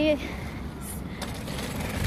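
Steady low outdoor rumble on a phone microphone, with a faint click a little after a second in. A drawn-out spoken word trails off at the very start.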